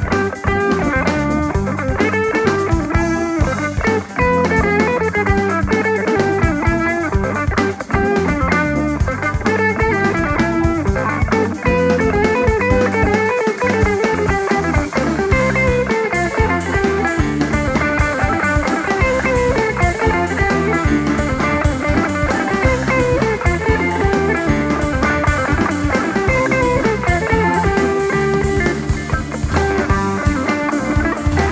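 Live rock band playing an instrumental jam: electric guitar lines over drum kit and bass, loud and continuous.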